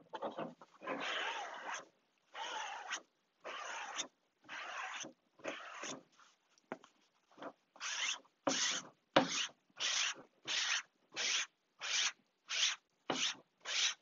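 Repeated rubbing strokes over a fabric-covered plywood panel as glue is worked into the fabric and the excess wiped off. The strokes are slower, about half a second to a second each, at first, then turn shorter and quicker, about two a second, in the second half.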